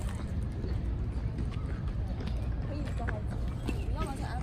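Outdoor park ambience: a steady low rumble with repeated clopping steps on pavement, and voices murmuring in the background.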